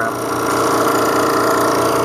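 Portable refrigerant recovery machine running steadily, its compressor pumping refrigerant out of an old heat pump's lines into a recovery tank.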